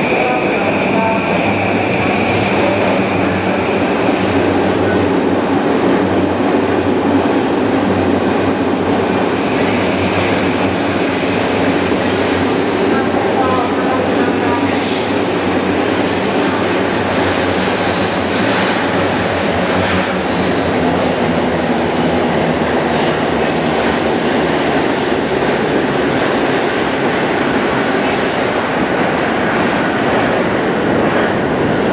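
JR East E235-1000 series electric train pulling out of an underground station platform, its cars running steadily past with wheel and motor noise and thin high wheel squeals.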